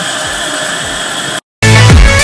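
Faucet water running steadily into a stainless steel sink, then a brief dropout and loud electronic background music with a heavy bass beat cutting in about one and a half seconds in.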